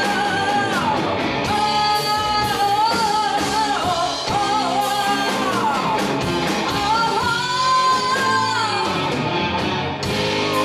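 Live rock band playing: drums, bass and electric guitar under a lead melody of long held notes that slide from one pitch to the next.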